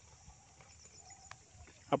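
Faint outdoor background with a few faint high chirps, then a man's voice breaking in loudly right at the end.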